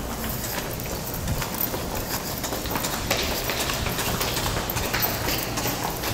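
Footsteps of hard-soled shoes clicking on a hard corridor floor at a walking pace, about two steps a second.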